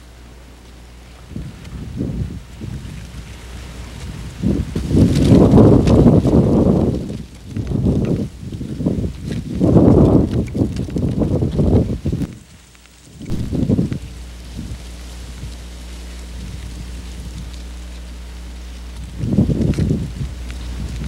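Wind buffeting the microphone in rumbling gusts, loudest in surges a few seconds in and again around the middle, then settling to a quieter stretch with a steady low hum.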